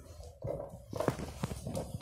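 A few light knocks and handling sounds as fabric is arranged on a sewing machine's bed under the presser foot, before stitching starts.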